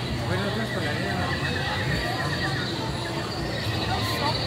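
Indistinct chatter of people walking close by, over a steady low background rumble. A high, rapid trill sounds for a couple of seconds from just after the start.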